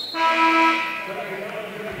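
Arena scorer's-table horn sounding once for about a second, signalling a substitution at a dead ball.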